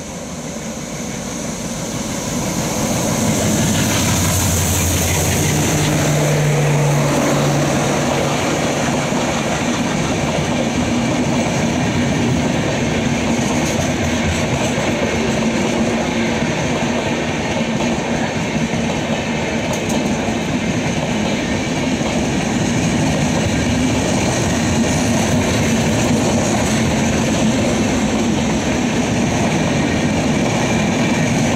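Express train passing close by at speed: the diesel locomotive's engine swells to a peak a few seconds in, then a long, steady rush and clickety-clack of its LHB coaches on the rails.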